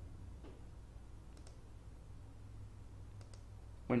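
Three faint computer-mouse clicks, the later two each a quick double click, over a low steady hum. A man's voice starts right at the end.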